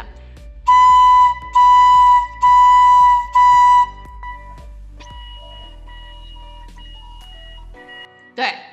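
A small keyed transverse flute (響笛) playing one C, tongued into four separate notes of equal pitch, each about two-thirds of a second long with short breaks between them. After the fourth note a much fainter, thin tone sounds on and off.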